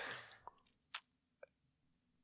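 A nearly silent pause at close microphones with small mouth noises: a faint click, then one short breath-like hiss about a second in.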